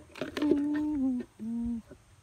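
A person humming two notes: a longer one that sags slightly in pitch, then a short lower one.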